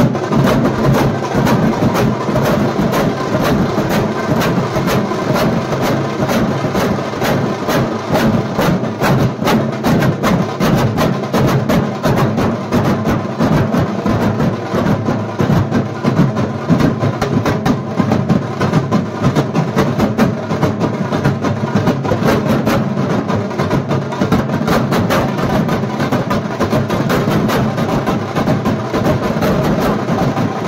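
A large duff drum troupe playing together: many white-headed drums beaten with long curved sticks in a fast, dense, unbroken rhythm at a steady loud level.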